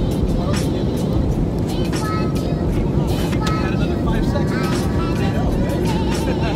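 Steady drone of an airliner cabin in flight, engine and air noise, with faint voices over it.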